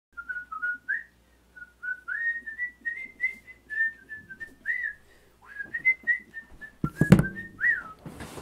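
A man whistling a tune in short clear notes, with a loud thump about seven seconds in as he sits down heavily in a leather office chair.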